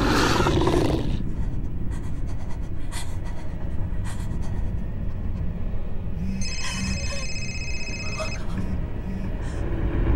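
Horror short film's soundtrack: a continuous low rumble, a brief voice in the first second, and a high shrill ringing tone from about six to eight seconds in.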